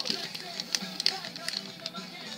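Crackling and crinkling of a paper sticker being handled and peeled from its backing, with irregular sharp clicks, over faint background music.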